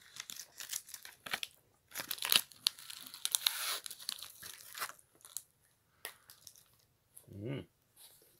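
A chocolate bar's wrapper being torn open and crinkled by hand: a dense run of crackling rustles for about five seconds, thinning out after that.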